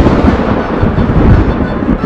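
Loud, continuous rolling rumble of thunder: a storm sound effect in the soundtrack.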